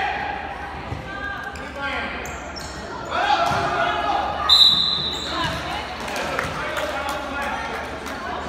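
Youth basketball game in an echoing gym: a basketball bouncing on the hardwood floor amid shouting players and spectators, with a short, high referee's whistle about four and a half seconds in.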